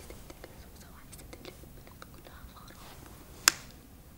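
A quiet pause in a room, with faint scattered small clicks and soft breath or mouth noises, and one short sharp sound about three and a half seconds in.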